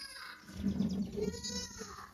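A goat bleating once, a short call about a second and a half in.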